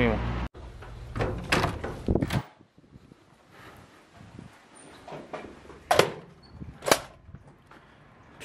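A glass entrance door being pushed open and swinging: a few short knocks a second or two in, then two sharp, loud clacks about a second apart in the second half.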